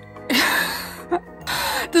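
A woman's long, breathy, exasperated sigh fading away, then a shorter breath and the start of a laugh near the end, over quiet background music.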